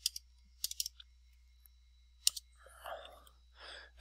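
A few sharp clicks from a computer keyboard and mouse as an amount is typed into a field. There is one click at the start, a quick run of three or four about two-thirds of a second in, and one more a little past two seconds.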